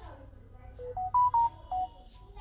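A smartphone's electronic tone: five short beeps in quick succession, climbing in pitch and then stepping back down, the middle, highest beeps the loudest.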